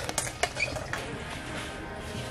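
A few sharp knocks and rustles in the first second as a large sack and a plastic poultry waterer are handled in the arms. After that comes a steady background hum, with faint music under it.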